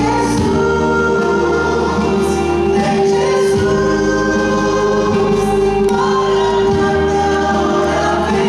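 Live gospel song: two women and a man singing in harmony into microphones over electric bass and acoustic guitar, with long held notes and a few chord changes.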